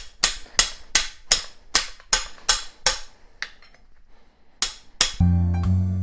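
Hammer striking a steel swaging tool driven into the end of a copper pipe: about ten quick, even, ringing blows over three seconds, a pause, then two more. The tool is stretching the annealed pipe end into a socket. Upbeat background music starts near the end.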